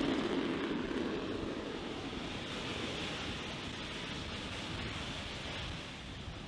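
AV-8B Harrier's Pegasus turbofan jet engine during a hover and vertical landing: a steady rushing jet noise with no distinct pitch that slowly grows fainter.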